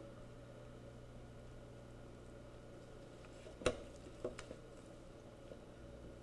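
Faint steady hum, broken about three and a half seconds in by one sharp snip and a fainter one half a second later: scissors cutting through a string.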